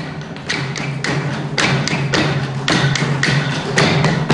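Drumsticks beaten on wooden practice blocks for chenda training, several players striking together in a steady rhythm: a loud stroke about every half second with lighter strokes between.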